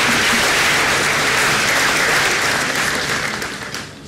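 A large audience applauding steadily, then dying away near the end.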